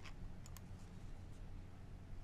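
Faint steady low hum with a few soft clicks in the first half-second.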